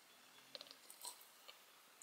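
Near silence with a few faint clicks and mouth sounds of someone sipping an energy drink from a can.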